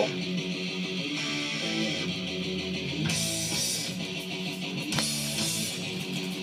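Heavy metal vinyl record playing: electric guitar riffs, with one short click about five seconds in.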